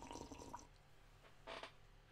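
Faint sip from a mug, with a short second sip or swallow about one and a half seconds in.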